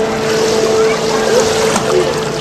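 Continuous rushing of swimming-pool water as a baby swims, with voices faintly over it and a steady humming tone.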